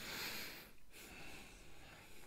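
A person breathing noisily through the nose, twice: a short, strong breath, then a longer, softer one about a second in.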